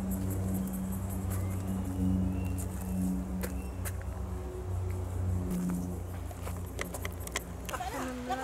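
Background music with low, sustained bass notes that shift every second or so, and a few sharp clicks near the end.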